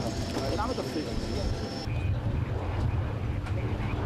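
Steady low engine rumble with people talking over it; the sound changes abruptly about two seconds in, at an edit.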